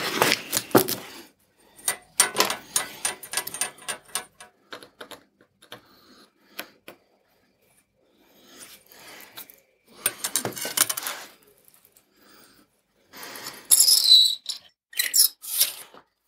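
Mild-steel plates clinking and sliding against each other and the wooden workbench as a stack is taken apart and handled, in a run of sharp taps. Near the end, a few short scratching strokes as a line is marked on a steel plate along a steel rule.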